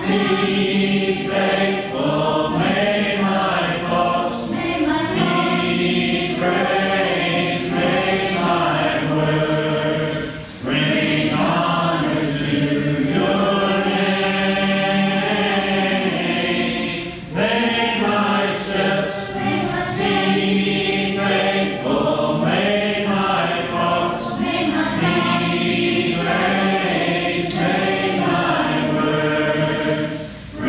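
Church congregation singing a hymn a cappella in parts, with short breaks between phrases about ten and seventeen seconds in.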